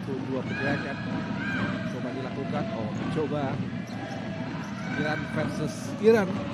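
Live futsal play in an indoor sports hall: players calling out and shouting over the thud of the ball and shoes on the court floor.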